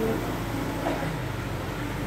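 A steady low hum of background room noise, with faint snatches of voices.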